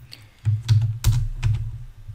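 Computer keyboard keys pressed about five times, sharp separate clicks a few tenths of a second apart, as keyboard shortcuts clear the script and paste in new code.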